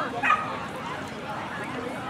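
A dog barks once, short and loud, about a quarter of a second in, over a background of people talking.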